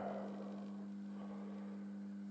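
A steady low hum with a few fixed overtones, unchanging throughout.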